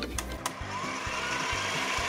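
A hand-held immersion blender runs in a plastic cup, mixing batter. It makes a steady whirring that starts about half a second in, with its pitch rising slightly.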